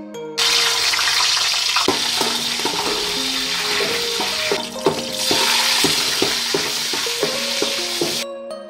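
Cashew nuts sizzling in hot oil in an aluminium pot, the sizzle starting suddenly about half a second in as they go into the oil and dipping briefly midway. A metal spoon stirs them, clicking and scraping against the pot.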